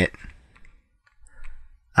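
A few faint, short clicks in a pause between words, with a soft brief sound shortly before the talking resumes.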